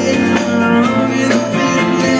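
A live rock band playing an instrumental passage with no singing: guitars, keyboard and drums, with a sharp drum hit about once a second.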